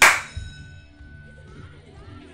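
Online slot game sound effect: a single metallic clang with a bell-like ring as the reels stop. The ring fades over about a second and a half.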